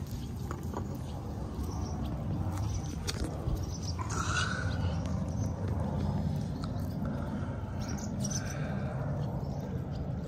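Hens pecking at a bowl of cut fruit, beaks tapping in scattered clicks, with soft hen vocalizations and one louder call about four seconds in, over a steady low rumble.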